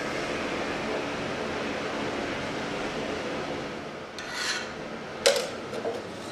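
A steady rubbing, rasping kitchen noise for about four seconds, then a brief scrape and a sharp click near the end.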